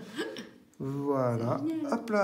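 A person's voice making wordless sounds that fall in pitch, starting about a second in.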